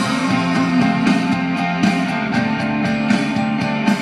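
Rock music in an instrumental passage with no vocals: guitars playing over a steady drum beat.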